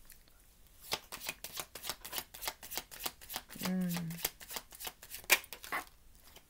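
A tarot deck being shuffled by hand: a quick, uneven run of soft card slaps and clicks that starts about a second in.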